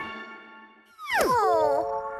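Cartoon soundtrack: a ringing note dies away, then about a second in a high sliding tone falls steeply and settles into a held note with overtones.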